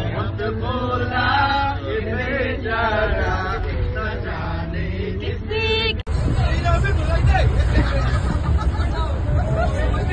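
A group of men singing and chanting together inside a moving bus, over the steady low hum of the bus. About six seconds in it cuts off abruptly to louder bus rumble with scattered voices.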